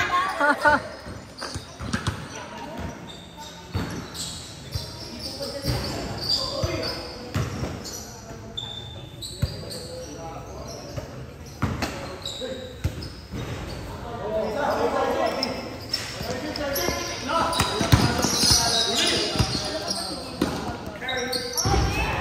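Basketball bouncing on a hard court floor in irregular knocks, with players' voices calling out, echoing in a large covered gym.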